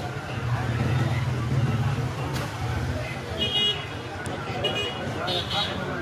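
Street traffic noise: a vehicle's engine rumbles past during the first few seconds, then several short high-pitched beeps follow, with voices in the background.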